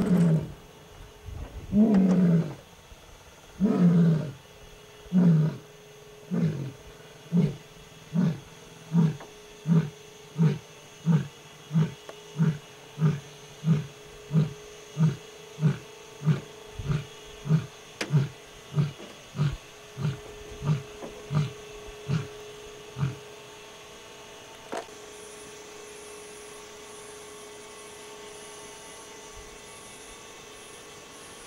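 A lion roaring: a full roaring bout that opens with a few long, deep roars and runs into a train of shorter grunts, about one and a half a second, growing fainter until they stop near the end.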